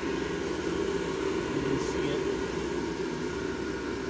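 Airblown inflatable's built-in blower fan running steadily, a constant even whir as it holds the fabric fully inflated.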